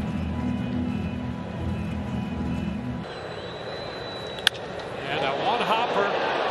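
Ballpark broadcast audio: low-pitched stadium music for the first three seconds, then crowd ambience. About four and a half seconds in comes a single sharp crack of the bat meeting the pitch, with a voice starting over the crowd near the end.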